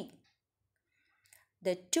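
A woman's speaking voice broken by a pause of about a second and a half. The pause holds only a few faint clicks before she speaks again.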